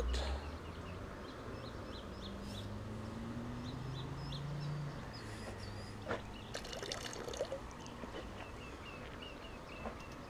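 Quiet outdoor ambience with birds chirping repeatedly in the background and a low hum that slowly rises in pitch a few seconds in. About six seconds in, a click and a short run of knocks and rattles come from a plastic gold pan being handled over a sluice box.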